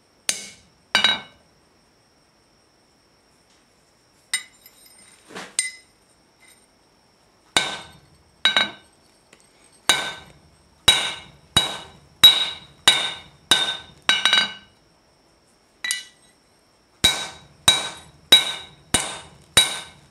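A hammer striking a hand-held tool set on steel on the anvil, each blow giving a sharp metallic ring. A few spaced blows come first, then steady runs of strokes at about one and a half a second.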